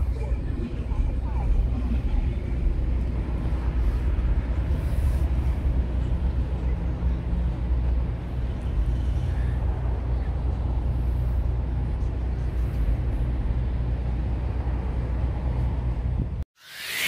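Outdoor ambience: a steady low rumble with no distinct events.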